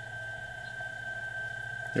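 PSK31 digital signal heard from a uBITX HF receiver tuned to the 20 m band: one steady tone over a low hum, with fainter band noise between them. The tone is the station being decoded as it sends.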